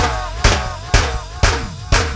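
Go-go band music: a drum beat hitting about twice a second under a repeating melody line that slides up and down, over a steady bass.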